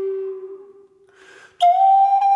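Native American flute in G minor: a low held note fades away, a short breathy sound follows, then a louder, higher note starts with a sharp attack about a second and a half in.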